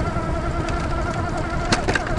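Rear hub motor of a fat-tire electric bike whining steadily under power while riding over a bumpy grass field, with a low rumble from the fat tyres and a single sharp knock from the bike near the end.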